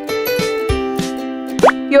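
Light children's background music with held notes and soft plucked beats. Near the end, a short cartoon-like sound effect slides quickly upward in pitch.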